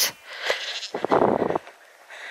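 A sheep bleating: one short, quavering bleat about a second in.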